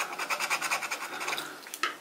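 Scratch-off lottery ticket being scraped: rapid back-and-forth strokes of a scraper over the latex coating on one number spot, a dry rasping scratch that tails off near the end.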